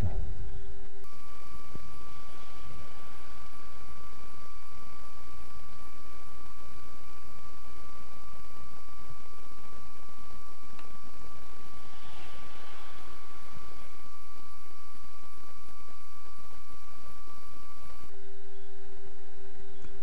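Steady low hum and hiss with a constant high-pitched whine held for most of the stretch, unchanging throughout.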